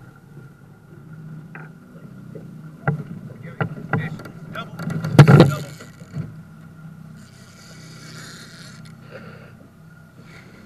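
A boat motor runs with a steady low hum under a series of sharp knocks on the aluminium fishing boat, with the loudest thump about five seconds in. A short hiss follows around eight seconds.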